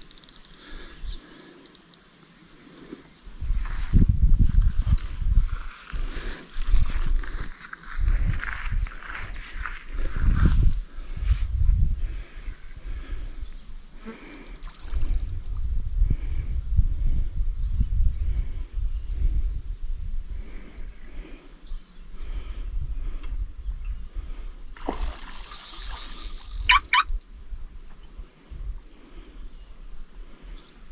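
Wind buffeting the microphone in gusts, a low rumble that comes and goes. About 25 seconds in there is a short louder rush with a few brief high squeaks.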